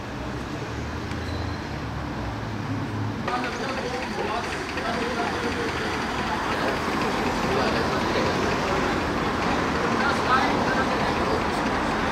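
A vintage tractor engine idling low and steady, which breaks off about three seconds in. After that comes a busy street ambience: a murmur of people's voices over general outdoor noise, slowly growing louder.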